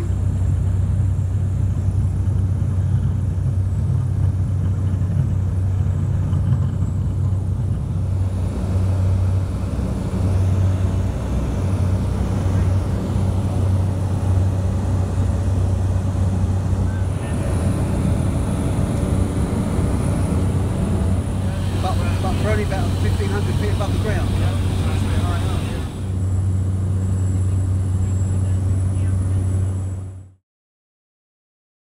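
Light aircraft's piston engine and propeller droning steadily at takeoff and climb power, heard loud from inside the cabin.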